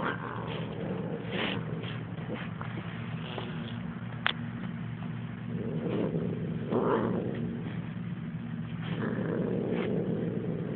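A pet cat purring close by in a steady low rumble, which swells louder twice, once around the middle and once near the end.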